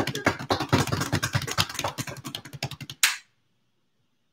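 A drum roll of hands beating rapidly on a desk, a quick irregular patter of slaps for about three seconds. It ends with one sharp hit about three seconds in, then stops.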